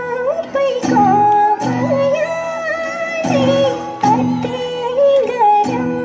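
Folk dance song: a woman's voice sings a winding, ornamented melody over instrumental accompaniment with a recurring low beat.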